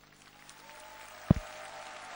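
Arena audience applauding, the applause swelling, with one sharp low thump just over a second in.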